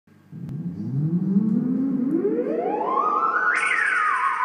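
Homemade theremin sounding one buzzy, overtone-rich tone that glides steadily upward from a low pitch over about three seconds as a hand moves near its pitch antenna, then turns suddenly brighter and starts to slide back down near the end.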